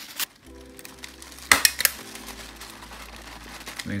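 A handheld stapler clicks twice in quick succession, about a second and a half in, stapling tissue paper to a paper cone. A faint steady hum sits underneath.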